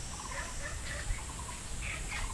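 Birds calling from the trees: short chirps and quick trills that repeat every half second or so, over a steady low rumble.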